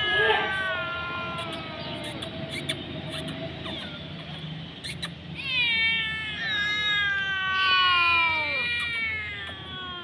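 Hungry street cat meowing: two long, drawn-out meows that fall in pitch, the first at the start lasting about two seconds, the second starting about five seconds in and lasting over three seconds.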